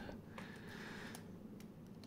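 Faint light clicks as a plastic slot-car body shell is lifted off its chassis by hand, over quiet room tone.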